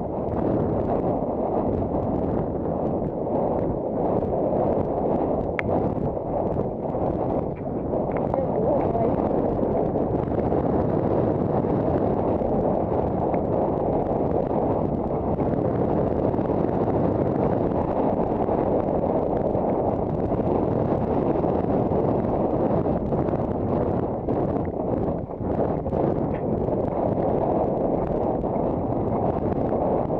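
Wind buffeting a helmet-mounted camera's microphone while a horse canters and gallops, with the horse's hoofbeats underneath. The rush is steady and heavy.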